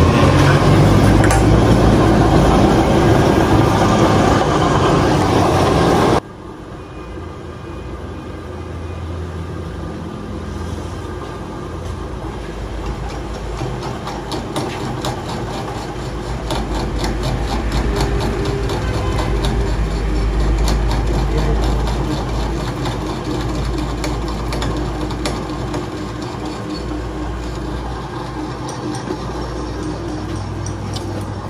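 A loud, rough mechanical noise for about the first six seconds, cut off abruptly. Then a metal lathe runs with a steady low hum and a rapid light ticking as it turns a tractor's front-axle spindle.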